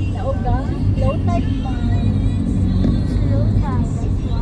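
Steady low rumble of a moving car's engine and tyre noise heard from inside the cabin, with voices or music over it.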